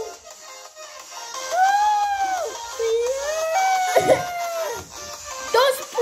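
A child's drawn-out, wordless wailing vocal sounds in several long sliding notes, rising and falling in pitch, with a brief click about four seconds in.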